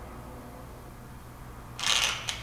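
A low steady hum of room tone, then near the end one short, loud click-and-rattle of handling noise as a phone is turned in the clamp of a handheld smartphone gimbal stabilizer.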